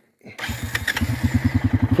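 Four-wheeler (ATV) engine starting about half a second in and settling into a steady, rhythmic idle.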